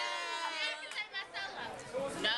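Several women's voices talking and chattering over one another.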